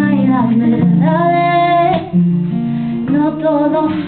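A woman singing live to her own acoustic guitar accompaniment, with strummed chords under her voice and one long held sung note about a second in.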